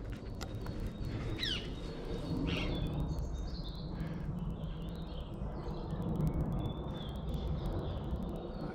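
Wild birds calling and chirping, with a short swooping call about one and a half seconds in, over a steady low rumble.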